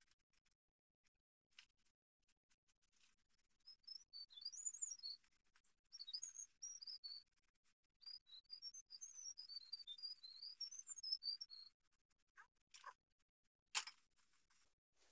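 A small songbird singing a rapid, warbling twitter of quick high notes in three phrases, the last one longest. Faint scattered clicks throughout and a sharp click just before the end.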